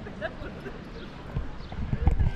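Busy outdoor ambience with faint distant voices, and low thumps on the microphone near the end as the camera is swung round.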